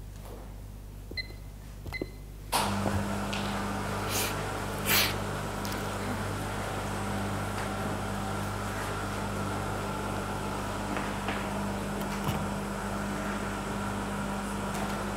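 Two short electronic beeps, then a machine switches on about two and a half seconds in with a sudden steady hum and fan noise that keeps running.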